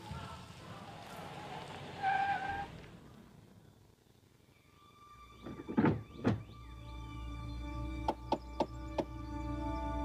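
Film soundtrack: choral music fades out over the first few seconds. About six seconds in come two heavy thuds. Then a low, sustained drone of suspense music swells, with four sharp clicks in quick succession.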